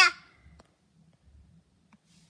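The end of a short, high-pitched spoken "yeah" right at the start, then near silence with only a faint low hum.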